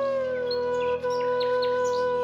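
Flute holding one long low note that slides down slightly about half a second in, with birds giving short high chirps over it through the second half.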